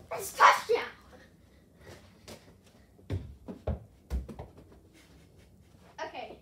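A child's loud, wordless shout in the first second, followed a couple of seconds later by three or four short, dull thumps.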